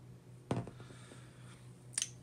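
Metal rifle parts of a SIG SG 553 handled during reassembly: one sharp click about half a second in, followed by a few faint handling ticks.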